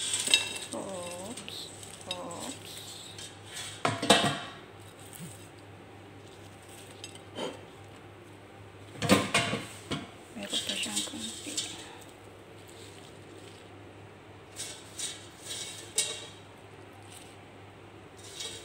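Fries being tipped out of a perforated fryer basket onto a paper-lined plate: clattering knocks of the basket against the plate and cookware, with the fries tumbling, in several separate bursts a few seconds apart.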